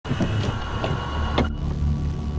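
A low steady drone with a hiss and a few short crackles over it; the hiss drops away about a second and a half in, leaving the drone.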